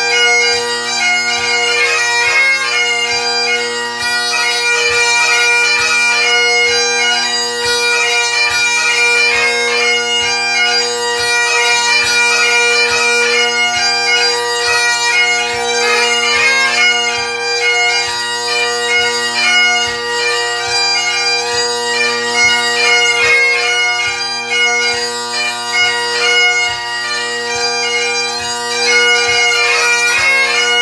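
Great Highland bagpipe playing a reel: a fast chanter melody full of quick grace notes over the steady, unbroken hum of the drones.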